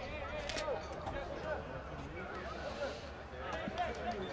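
Faint, distant voices of players calling out across a football pitch, over a steady low hum, with one brief sharp click about half a second in.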